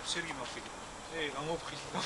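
Two men talking in conversation, with no other clear sound standing out.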